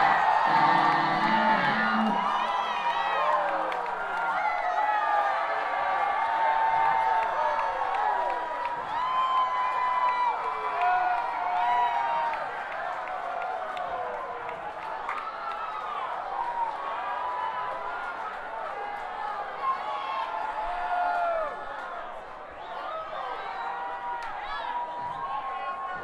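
Club crowd cheering, with many voices whooping and yelling at once. It is loudest at the start and gradually dies down.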